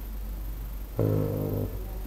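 A man's short hum or drawn-out filler sound, held at one low pitch for under a second, about a second in after a pause.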